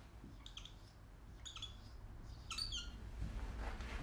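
Marker squeaking on a whiteboard as the answer 559 is written: three short, faint squeaks about a second apart, one for each digit.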